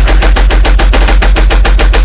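Hard dubstep drop: a loud, rapid machine-gun-like stutter of drum hits, about fifteen a second, over a pulsing deep bass.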